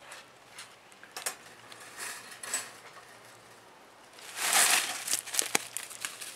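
Dry leaves and pine needles rustling, with scattered light clicks of the wire live trap being handled; a louder rustle comes about four and a half seconds in, followed by a quick run of sharp metallic clicks and rattles from the trap.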